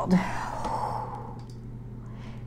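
A woman's long breathy sigh, exhaled and fading out over about a second and a half.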